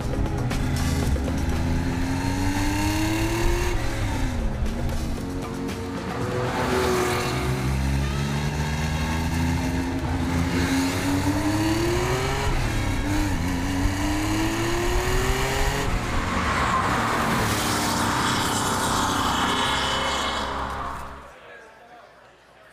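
Porsche 911 Carrera RS's air-cooled 2.7-litre flat-six accelerating hard, its pitch climbing through the gears and dropping at shifts about four and thirteen seconds in, under background music. It fades out near the end.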